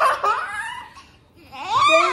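Children laughing in two bursts, one at the start that fades within about a second and a louder one near the end.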